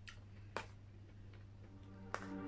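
Fingers pulling apart grilled chicken in an aluminium foil tray: a few faint clicks and crackles, the sharpest about half a second in, over a low steady hum.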